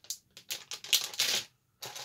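Crinkling of a clear plastic bag holding a plastic kit part as it is lifted out and laid down, in several short bursts, stopping briefly near the end.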